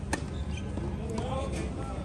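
A tennis ball struck once with a sharp knock just after the start, then people's voices, over a steady low rumble.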